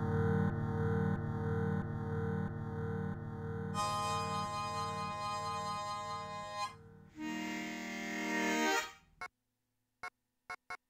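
Korg Volca Sample playing sequenced harmonica samples as a short jam: sustained harmonica chords that pulse about twice a second at first. The tone changes about four seconds in and again near seven seconds, then the sound stops suddenly about nine seconds in.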